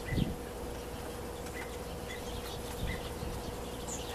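Outdoor ambience: short faint chirps every second or so over a steady hum, with a low thump just after the start and a softer one near three seconds in.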